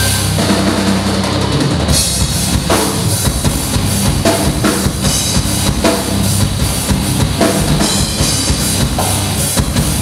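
Metal band playing live: electric guitars and bass holding heavy low notes over a drum kit with kick and snare hits, the cymbals coming in about two seconds in.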